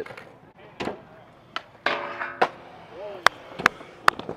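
Skateboard clacking on concrete: about five sharp, separate clacks spread through a few seconds.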